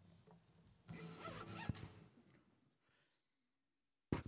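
Near silence, with faint rustling and shuffling of people sitting down for about a second, starting about a second in.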